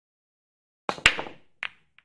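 Sharp clicks of billiard balls striking each other: a quick run of hits about a second in, the loudest among them, then one more hit about half a second later.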